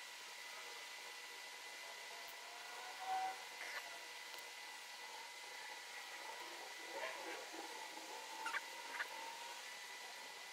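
Faint small clicks and short squeaks of an Allen key turning the screws on the back of a CAT S48c phone, over a steady hiss with a faint constant tone. The clicks are scattered, with a cluster about three seconds in and another near the end.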